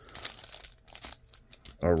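Foil trading-card packs crinkling and rustling in the hands as they are handled, in short, irregular rustles.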